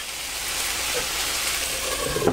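Tofu and spinach frying in hot oil in a skillet, a steady, even sizzle.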